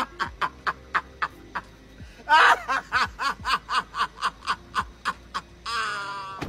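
A man laughing hard in a long run of short rhythmic 'ha' bursts, about four a second, with a louder outburst about two and a half seconds in and another near the end.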